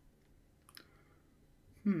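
A single short click about three-quarters of a second in, then a voiced "hmm" near the end.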